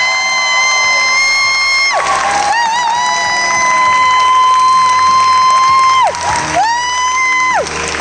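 A young girl singing into a microphone, holding three long high notes in turn, each sliding up into pitch and falling away at the end; the middle note is the longest, about three and a half seconds. These are the closing notes of the song, with the audience starting to cheer.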